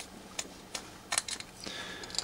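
Small sharp metallic clicks of a steel split key ring being prised open and wound onto a cut acrylic keyring tag, about half a dozen clicks with a quick cluster about a second in.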